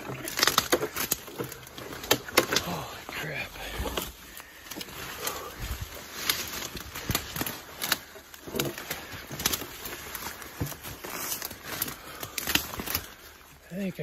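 Footsteps crashing and crackling through thick brush and twigs on a steep uphill climb, in many irregular snaps, with hard breathing close to the microphone.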